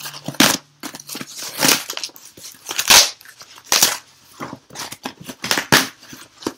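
A cardboard mailing box being ripped open by hand without a knife: a run of short, sharp tearing and crunching noises with brief gaps between them.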